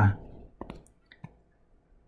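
A few light, sharp clicks in two quick pairs, about two thirds of a second and a second and a quarter in, from the computer's pointing device as the pen colour is switched in the toolbar and an arrow is drawn on screen.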